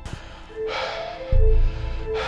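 Horror film score of held eerie tones with a deep bass pulse about one and a half seconds in, the loudest sound. A sharp, breathy gasp comes a little after half a second in.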